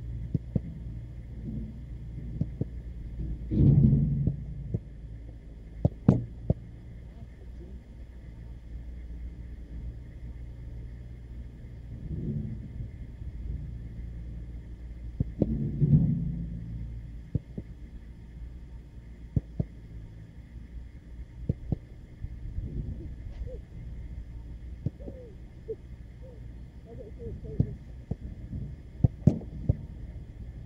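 A football being struck at a goalkeeper in training: sharp impact thuds every few seconds, with two louder, longer thumps, over a steady low rumble.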